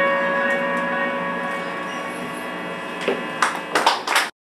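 The band's final chord, acoustic guitar, electric guitar and keyboard held together, rings out and slowly fades. About three seconds in, the small audience breaks into a few scattered claps and cheers.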